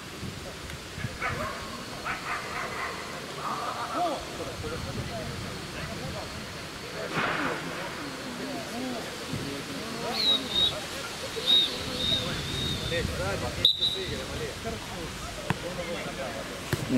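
Indistinct voices of footballers talking on an outdoor pitch. A few short, high, wavering whistle-like tones come in the second half.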